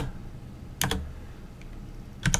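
Computer keyboard keystrokes: one clear key press a little under a second in and a fainter one later, over a low steady hum.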